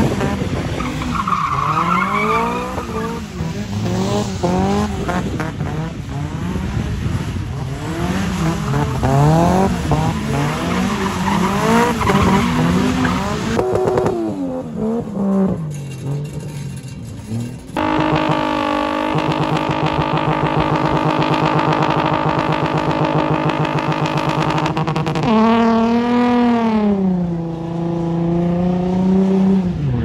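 Car engines revving hard with tyre squeal during drifting and burnouts. For the first half the revs rise and fall again and again. Partway through the engine is held at steady high revs for several seconds as the tyres spin, and near the end the revs sweep up and down again.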